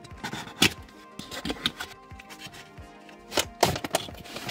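A utility knife cutting the tape on a cardboard box, with a few sharp clicks and knocks of the cardboard being handled, the loudest a little over half a second in and another pair near the end, over soft background music.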